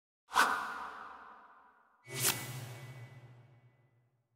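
Two whoosh sound effects of an animated logo sting, the first about a third of a second in and the second about two seconds in, each hitting suddenly and fading out slowly; the second carries a low hum and a faint high ringing tone as it dies away.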